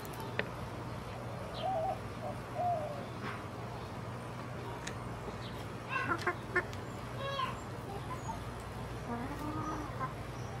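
A flock of domestic hens clucking softly and on and off, with a quick cluster of sharper calls about six seconds in, over a steady low hum.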